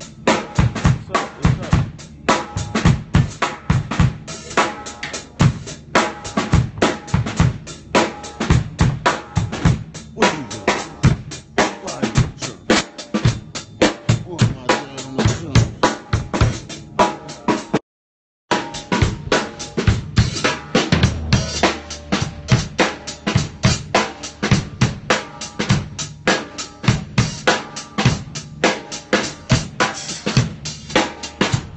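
Acoustic drum kit being played: a busy, continuous beat of many drum and cymbal strikes several per second. Just past halfway the sound cuts out completely for about half a second.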